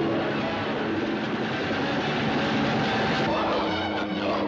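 Helicopter rotor and engine noise, a steady mechanical drone on an old, lo-fi film soundtrack.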